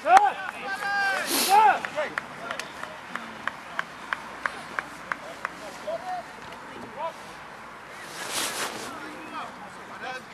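Men shouting across a rugby pitch during a stoppage in play, then a run of short sharp clicks, about three a second, and a brief rush of noise near the end.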